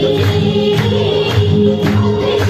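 Group singing of a Nepali folk dance song, accompanied by rhythmic hand clapping at about two claps a second.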